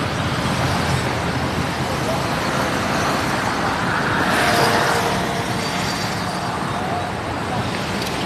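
Steady road traffic noise, with one vehicle growing louder and passing about four to five seconds in.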